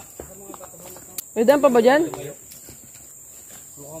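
A short spoken exclamation about a second and a half in, over a steady high-pitched insect drone, with a few faint ticks and one click just before the voice.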